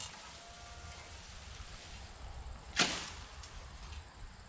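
A hand scythe's blade swishing through dense, tall weeds: one sharp, short stroke about three-quarters of the way through, with the tail of the previous stroke right at the start.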